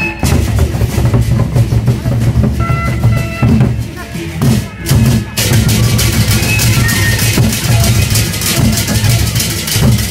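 Gendang beleq ensemble playing: large Sasak barrel drums beating a fast, dense rhythm, with short high metallic tones over it. From about halfway the high clashing gets thicker and brighter.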